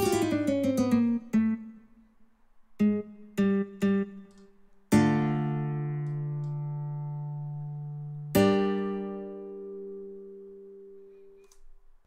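Sampled nylon-string guitar from Studio One's Presence instrument playing MIDI chords. It opens with a fast run of plucked notes and three short plucks, then two chords about five and eight seconds in, each left ringing and slowly fading.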